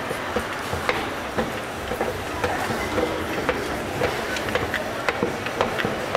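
Footsteps on the metal steps of a stopped escalator: knocks roughly twice a second, a little irregular, over steady background noise.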